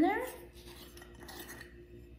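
Faint small handling sounds of a glass spice jar as the plastic shaker insert on its top is worked at, with a low steady hum underneath.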